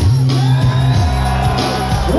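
Live band music played loud through a festival sound system, with a heavy bass line stepping between notes under shouted vocals.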